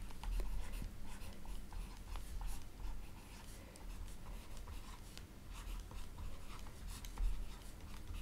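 Faint scratching and tapping of a stylus writing on a tablet screen, over a steady low hum.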